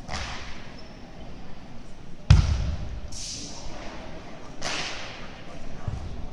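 A single heavy foot stomp on a wooden sports-hall floor about two seconds in, a Chen-style tai chi power stamp, with a short low boom in the hall after it. Quick swishes from the performer's fast arm movements come near the start, around three seconds and just before five seconds.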